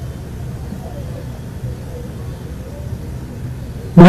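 Steady low rumble and hum of background noise, moderately loud, through a pause in speech.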